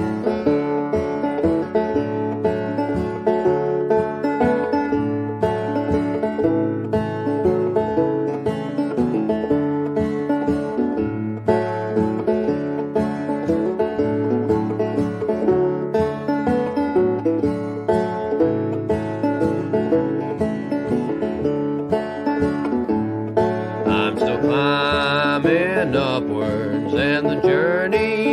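Instrumental break of a folk-style song: plucked string instruments playing a steady repeating pattern, with a wavering melody line coming in near the end.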